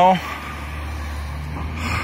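A motor vehicle's engine running with a steady low hum, a little louder near the end.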